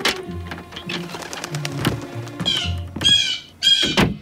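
A blue jay squawking, three harsh calls in the second half, as it sits trapped in a small room. Steady background music plays under it, and there is a thump near the start.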